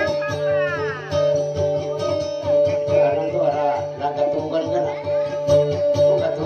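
Dayunday music played on plucked guitar over a bass that pulses several times a second. A voice-like line slides down in pitch just after the start.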